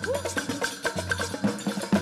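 Upbeat music with a steady beat: quick, crisp percussion clicks over repeating bass notes.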